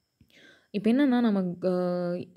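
A woman's speaking voice, with slow, drawn-out syllables, after a soft breath in the first half second.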